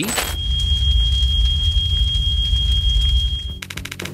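Glitch transition sound effect: a short crackly burst, then one steady high tone over a deep drone for about three seconds, ending in a quick run of rapid clicks.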